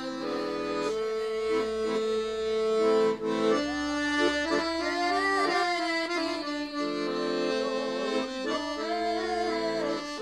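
Piano accordion playing a folk tune, a melody over held chords, with boys' voices singing along.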